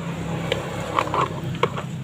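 Handling noise from an analog multimeter and its test leads being brought to a circuit board: about five light clicks and taps, two of them close together around the middle, over a steady low hum.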